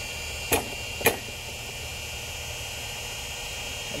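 A pitching machine throws a baseball and, about half a second later, the ball smacks into a catcher's mitt, two sharp knocks with the second the louder. A steady machine hum runs underneath.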